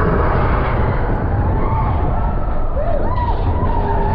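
Matterhorn Bobsleds car running fast along its steel track, a loud steady rumble and rattle of wheels and car body, with a few short rising and falling tones about three seconds in.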